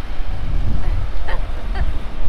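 Wind buffeting an action camera's microphone: a loud, uneven low rumble that swells and dips.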